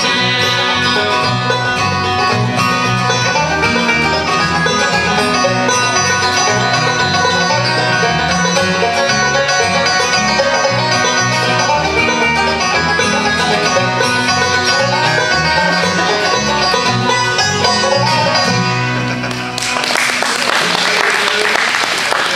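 Live bluegrass band of banjo, fiddle and acoustic guitars playing a tune through to its end. About three seconds before the end the music stops and the audience applauds.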